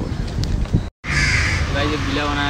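Outdoor background noise that cuts off abruptly about a second in, then a crow caws once, and a man's voice begins near the end.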